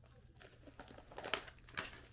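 Plastic treat pouch crinkling as it is handled, in irregular rustles that start about half a second in and grow louder, with sharp crackles near the middle and end.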